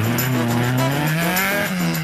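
Race car engine accelerating hard, its pitch climbing steadily, then dipping briefly near the end as it shifts gear, with background music underneath.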